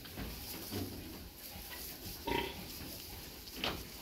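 Pig grunts: a few short calls, the loudest about two seconds in.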